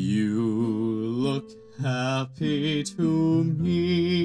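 Stage musical cast singing together in a slow, held melody with vibrato, accompanied by acoustic guitar, with brief breaths between phrases.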